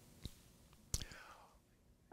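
Soft mouth sounds and breath picked up by a handheld microphone: two short lip or tongue clicks, the second about a second in and louder, followed by a faint breath.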